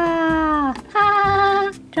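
A person's voice making a drawn-out, whining note that slides down in pitch, then a second shorter, steady note just after the middle: a bored, annoying noise that draws the reply "knock it off".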